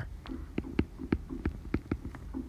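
Apple Pencil tip tapping on an iPad's glass screen during handwriting: a quick, irregular series of sharp clicks, about three a second, over a faint low hum.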